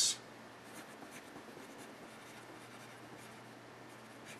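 Pencil writing on paper: faint, irregular scratching strokes as a number is written out.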